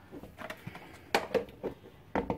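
Plastic lid being pressed and snapped onto a plastic drink pitcher: a few light clicks and knocks, the sharpest a little past halfway.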